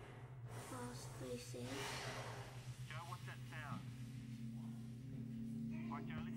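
A muffled voice and breathy noises in the background over a steady low hum; a steady low tone comes in about four seconds in.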